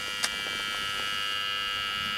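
Tracer-gas leak detector sounding a steady electronic buzzing tone as its ground probe picks up the gas, the sign that the leak in the buried water supply pipe lies at this spot. A short click about a quarter second in.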